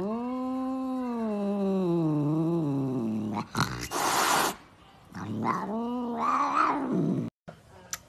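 Domestic cat yowling: a long, drawn-out growling call for about three seconds that sinks in pitch, a short hiss, then a second, shorter yowl.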